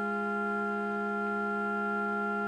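Pipe organ holding one sustained chord of several notes, steady and unchanging.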